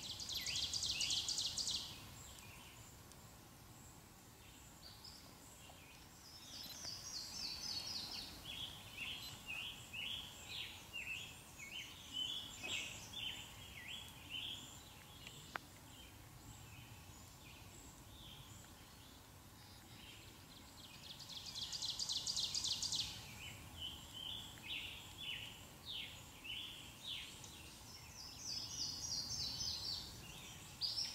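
Faint songbirds singing: a fast, dry, high trill lasting about two seconds comes at the start and again about two-thirds through, with short falling runs of notes and many quick chirping phrases between them.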